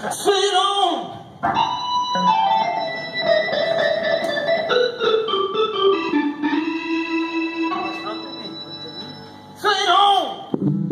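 A live blues band, with an electric organ holding sustained chords that step down in pitch over several seconds. Short, louder band passages come at the start and again near the end.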